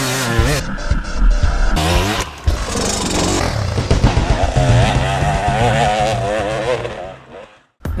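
Dirt bike engine revving, its pitch swinging up and down, mixed with background music. It fades out shortly before the end.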